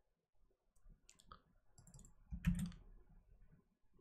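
Faint clicks and taps at a computer keyboard and mouse, with one louder tap about two and a half seconds in.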